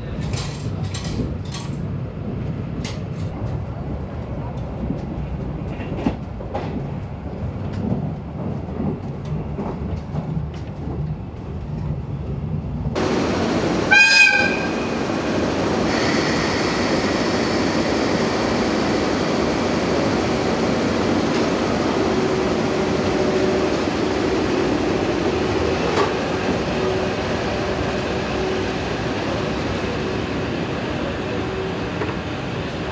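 Twilight Express sleeper train running, heard from inside the coach: a steady rumble with scattered clicks of the wheels over rail joints. About halfway through the sound changes abruptly to the train standing at a platform. A short horn blast is the loudest sound, followed by a steady hum from the locomotive.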